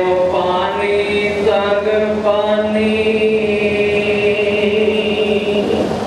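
A man chanting a devotional recitation over a microphone, shifting pitch in the first couple of seconds and then holding one long steady note for about three seconds.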